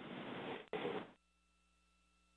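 A burst of hiss on the launch's communications audio loop, an open microphone after a call-out, with a short break, then cutting off abruptly about a second in and leaving near silence.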